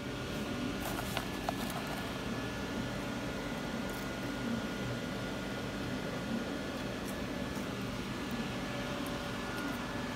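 Steady whir of a laser engraver's fans while it runs, an even hiss over a low hum, with a few faint ticks in the first two seconds.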